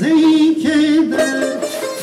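Live Persian traditional music: a tar is plucked under a held, slightly wavering melodic line that steps from note to note.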